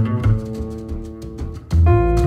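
Jazz piano trio playing an instrumental passage: acoustic piano notes ringing over deep plucked upright bass notes. A loud low bass note lands at the start, and another with a new piano chord comes near the end.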